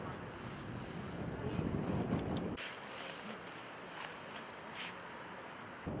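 Wind rumbling on the microphone over outdoor background noise. About two and a half seconds in, the low rumble drops away abruptly, leaving a fainter hiss with a few faint clicks.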